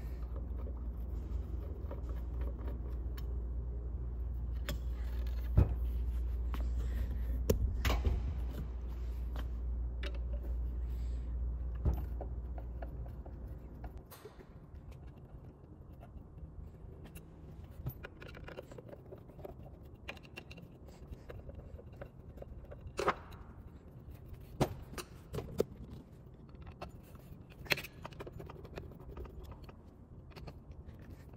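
Small metal screws and a screwdriver clicking and clinking on a workbench as a ceiling fan motor's cover is unscrewed and handled. Under the first half there is a steady low hum, which fades out about halfway through.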